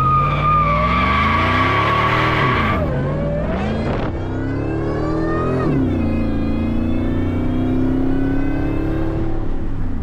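Supercharged 5.4-litre V8 of a 2000 Ford F-150 SVT Lightning with side-exit exhaust, accelerating hard. The engine note climbs, falls back at an upshift about three seconds in, climbs again and drops at another shift near six seconds, then settles into a steady, slowly rising pull.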